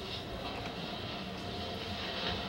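Steady low background noise of the room, with no distinct events.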